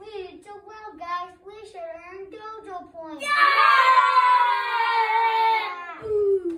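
Young children's voices singing a short wavering phrase, then a loud, held cry starting about three seconds in that falls slightly in pitch.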